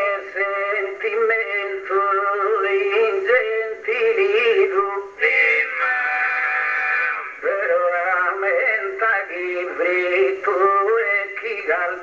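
A man singing unaccompanied in the ornamented, drawn-out style of a Sardinian improvised-poetry contest, his pitch wavering through melismas, with a long held note about halfway through.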